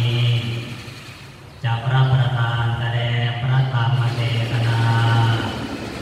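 A Buddhist monk's voice chanting in a low, level monotone, with a short pause for breath about a second in.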